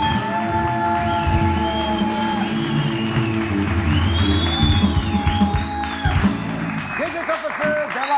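Live band music in a TV studio, with a steady bass under held notes and a melody, and audience applause joining about six seconds in.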